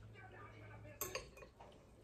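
A metal spoon scraping and clinking in a glass bowl of grits. It is quiet at first, then two sharp clinks come close together about halfway through.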